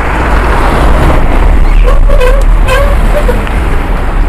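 Wind buffeting the microphone and road traffic noise while riding along a highway, close past a bus and cars.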